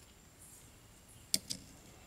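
Two light metallic clicks close together about a second and a half in, from small parts of a disassembled Roosa Master rotary injection pump being handled at the rotor head; otherwise quiet.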